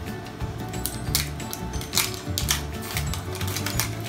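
Background music, with a run of short sharp crinkles and tears as a plastic-coated wrapping layer is peeled off an LOL Surprise toy ball.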